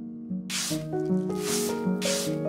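A broom sweeping a floor: swishing strokes begin about half a second in and repeat roughly every three-quarters of a second, over background music.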